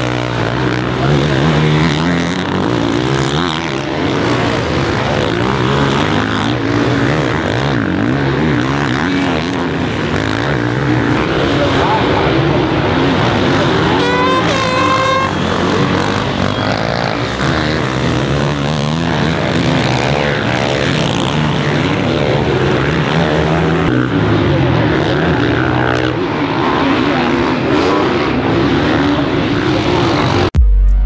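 Motocross bike engines revving up and down as riders race through the corners, loud and continuous, the pitch climbing and dropping with each throttle and gear change.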